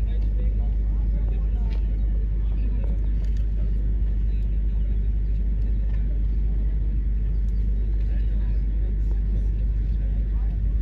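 Steady low rumble of outdoor ambience with indistinct voices of people around the track, no clear words.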